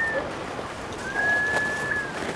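A high, steady whistled note, heard twice: one ends just after the start, and the other is held for about a second from around the midpoint, over a soft steady background hiss.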